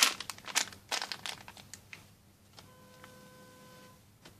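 Clear plastic bag around a packaged garment crinkling as it is handled and laid down, a quick run of sharp crackles in the first two seconds, loudest at the very start. A faint steady tone comes in for the last second or so.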